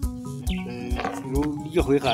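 A voice singing a traditional Bukusu song, with steady held instrument tones underneath and a regular low beat of about two to three thumps a second.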